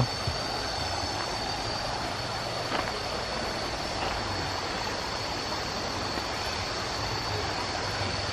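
Shallow stream running over rocks, a steady rush of water, with a steady high-pitched tone above it.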